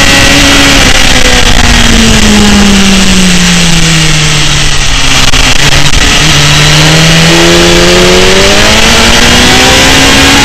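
BMW S1000RR inline-four engine heard from an onboard camera over heavy wind noise. The engine note falls smoothly over the first half as the bike slows into a corner, then climbs steadily as it accelerates out.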